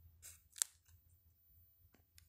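Pen scratching short tally-mark strokes on spiral notebook paper: two quick scratches in the first second, the second louder, and a faint one near the end.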